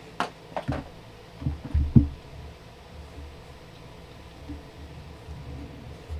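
A few dull knocks and thumps as an aluminium microphone boom arm is handled and fitted to its desk mount, the loudest pair about two seconds in.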